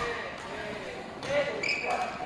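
A badminton racket hits a shuttlecock once, a sharp crack right at the start that rings on in a reverberant hall. Faint voices and softer court sounds follow.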